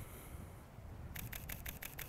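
Panasonic LUMIX S1 shutter firing in high-speed burst mode: a rapid, evenly spaced run of clicks that starts about halfway through and keeps going.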